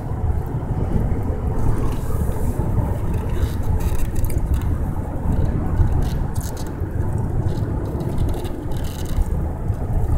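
Steady road and engine noise of a car driving along a road, heard from inside the cabin: a constant low rumble with no clear change in speed.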